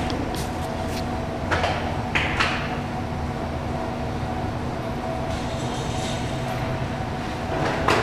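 2013 Victory Judge front wheel rim spinning during a spin test: a steady mechanical hum, with a few light ticks in the first two and a half seconds and another near the end.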